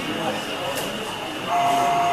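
Background chatter of an exhibition crowd. About one and a half seconds in, a steady whistle from an O gauge model steam locomotive's sound system starts and holds on one pitch.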